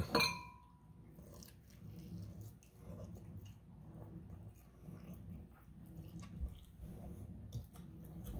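A person biting into and chewing a fried chicken wing: faint, irregular chewing sounds.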